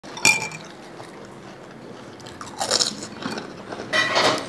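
Crisp panipuri shells being cracked open and crunched in the mouth, a cluster of crackly crunches in the second half. A short ringing clink near the start is the loudest sound.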